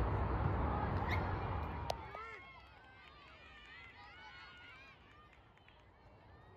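Outdoor ambience at a soccer game: distant shouts and calls from players and spectators on the field. A loud low rumble on the phone microphone covers the first two seconds and ends with a click, after which the calls stand out faintly over quieter air.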